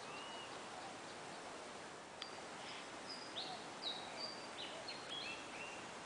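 Small birds calling in a series of short, high whistled notes, several falling in pitch, over a steady outdoor background hiss.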